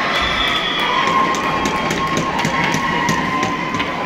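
Ice hockey rink during play: spectators shouting and cheering over sharp clacks of sticks and puck on the ice, which come many times throughout.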